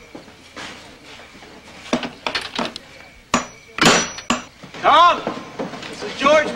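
Clatter and sharp knocks of objects being handled and something being opened, loudest a little after three and a half seconds in, followed near the end by a short voice sound.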